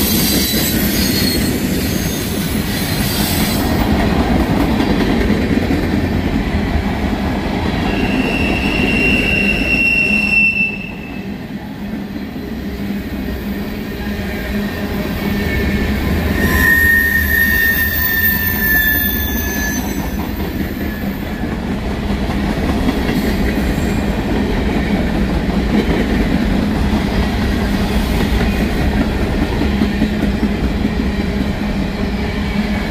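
Freight cars of a Norfolk Southern manifest train rolling past close by, a steady rumble and clatter of steel wheels on the rails. Wheels squeal high twice: once from about eight to ten seconds in, and again, lower, from about sixteen to twenty seconds.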